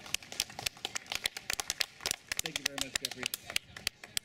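Scattered applause: a handful of people clapping, the claps heard as separate sharp slaps, with a brief murmur of a voice partway through.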